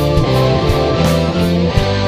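Progressive rock music: electric guitar and bass playing held notes over a drum kit, with regular cymbal and drum hits.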